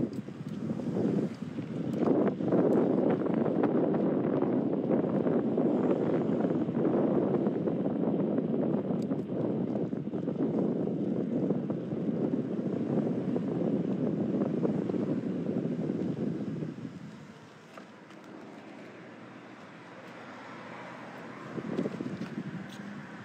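Wind buffeting the microphone of a phone carried by a moving cyclist: a steady rush that drops away to a quieter background about seventeen seconds in.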